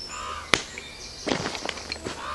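Kit being handled and packed into a bag: short rustles and knocks of items and fabric, with one sharp click about half a second in and a quick cluster of knocks in the second half.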